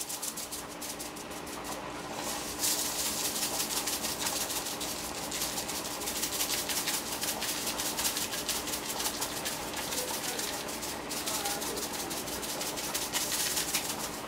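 A plastic seasoning shaker shaken rapidly over a pan of vegetables, the granules rattling inside it in quick runs of shakes that start a couple of seconds in and go on almost to the end.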